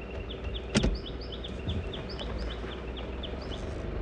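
A songbird singing a fast series of short, repeated chirps, over the low steady running of a vehicle rolling slowly along a dirt road. A single sharp knock sounds about three-quarters of a second in.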